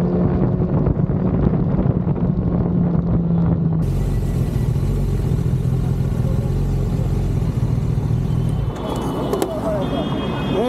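Kawasaki superbike engine running with wind on the microphone. After a sudden cut about four seconds in, a steady low engine hum takes over, and voices come in near the end.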